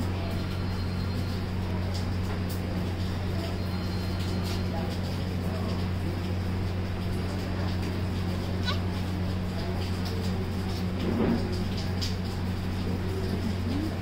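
A newborn baby gives a few faint, short cries as the BCG vaccine is slowly injected into her skin. The cries sit over a steady low hum, with one cry about two-thirds of the way in.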